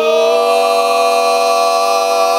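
Barbershop quartet of four male voices singing a sustained a cappella chord. The parts slide into place at the start and then hold it steady.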